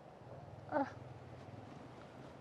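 A faint steady low hum, with one short pitched call about three-quarters of a second in.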